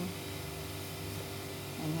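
A steady low hum with an even hiss beneath it, unchanging throughout.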